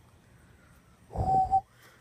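A short wheezing breath or snort close to the phone's microphone about a second in, with a thin whistle running through it and a sharp puff at the end.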